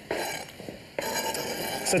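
A metal pot and kitchen utensils clattering: a sharp knock just after the start and another about a second in, each followed by a short scraping rattle.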